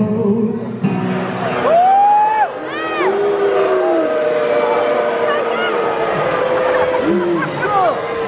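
Arena crowd shouting and calling out over an acoustic guitar. Several long voice calls rise and fall above the steady sound of the guitar.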